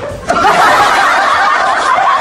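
Many people laughing together: a dense chorus of overlapping laughs that breaks out about a third of a second in and keeps going.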